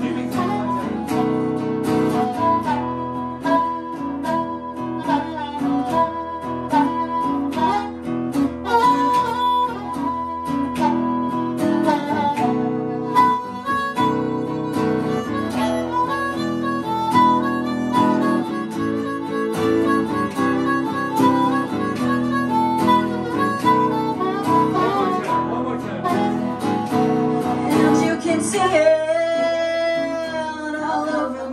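Harmonica solo, a bending melodic line played over guitar accompaniment. A singing voice comes back in near the end.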